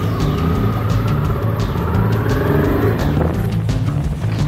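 Motorcycle engine running under way, its pitch rising over a couple of seconds and dropping about three seconds in, mixed with music.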